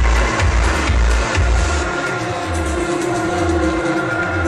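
Electronic dance music played loud over a club sound system, heard from within the crowd. A heavy kick-and-bass beat pulses about twice a second, then drops back about two seconds in, leaving held synth tones.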